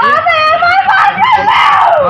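A young woman screaming and crying out in a loud, high, strained voice, in long drawn-out calls.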